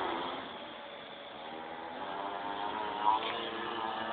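Mini-moto's small engine revving as it rides about: its pitch drops and the sound fades during the first second, then the pitch climbs and it grows louder to a peak about three seconds in.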